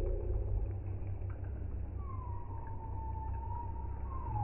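Slowed-down, pitched-down slow-motion audio: a steady deep rumble. About halfway in, a long drawn-out tone comes in and sinks slightly in pitch.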